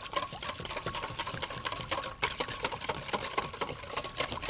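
Wire whisk beating eggs and milk in a stainless steel mixing bowl: rapid, rhythmic clicking of the wires against the metal, over a steady faint ring.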